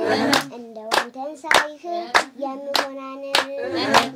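Group hand-clapping in a steady beat, about one and a half to two claps a second, accompanying a girl's singing voice.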